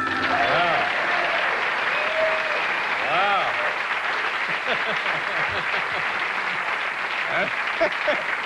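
A studio audience applauding steadily, with a few voices rising and falling above the clapping.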